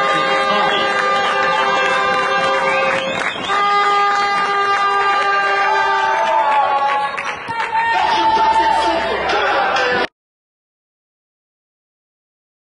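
Music with sustained, chord-like notes that change every few seconds, played over a sports hall's public-address system after a goal, with voices of players and spectators mixed in. The sound cuts off abruptly near the end.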